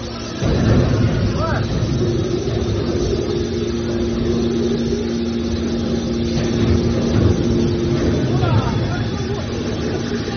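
Hydraulic scrap-metal baler running under load as its hydraulic cylinders close the lid: the pump and motor come in loudly about half a second in with a low rumble. A steady hum holds through the middle and drops away near the end.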